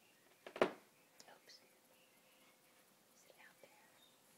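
Hushed whispering, with one short loud breathy burst about half a second in and a few faint short sounds after it.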